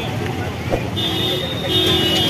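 Vehicle horn sounding twice, a short toot about a second in and a longer one near the end, over busy street traffic and crowd chatter.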